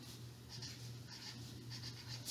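Felt-tip marker writing letters on paper: a string of short, faint strokes over a low steady hum.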